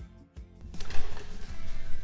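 Background music, dropping away briefly near the start and then coming back up.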